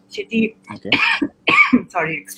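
A person talking over an online video call, with two short breathy bursts in the second half, and a faint steady low hum underneath.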